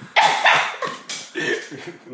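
Laughter in several short, loud, high bursts in quick succession.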